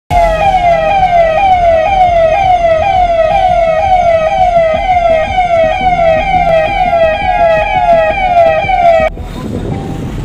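Electronic siren in a fast yelp, its pitch sweeping up and down about twice a second, cutting off suddenly about nine seconds in. It is sounded as a COVID-19 infection-alert siren.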